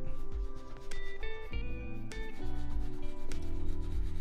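A bristle shoe brush rubbing quickly back and forth over a leather dress shoe, brushing dust off the upper before cream goes on. Background music plays under it.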